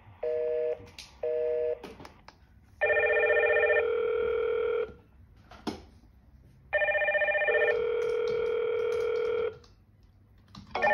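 Hikvision video intercom sounding a call from the door station: two short beeps, then two rings of about two seconds each, every ring a cluster of steady tones that shifts partway through.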